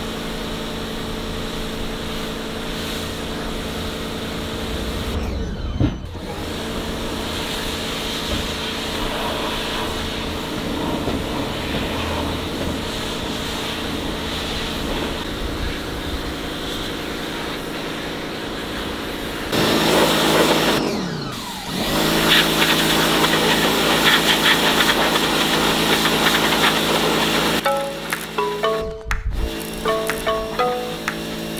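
Background music with sustained chords over the hiss of a pressure washer's jet spraying wooden decking, the spray getting louder about twenty seconds in; near the end a run of short stepping notes.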